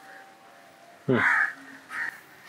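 A crow cawing: one loud harsh caw about a second in, then a shorter one near the end.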